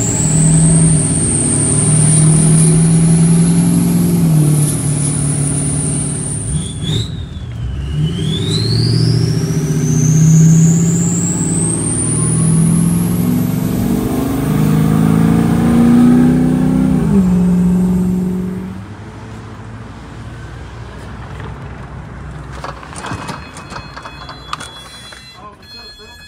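A 6.0 Powerstroke V8 turbodiesel accelerating, heard inside the truck's cab, with the turbo's high whistle rising along with the engine. The pitch climbs, falls back around five to seven seconds in, then climbs again until about eighteen seconds, when the engine eases off to a quieter hum.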